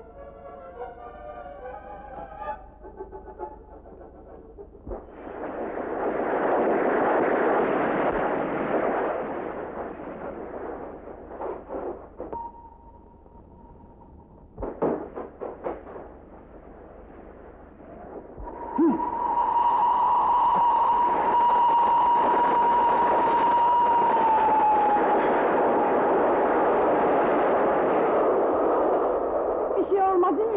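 Old film soundtrack: a few notes of music, then a steam train's loud rushing noise swelling and fading twice, with a long steady whistle that drops in pitch near the end as the train passes. Scattered clicks sound in between.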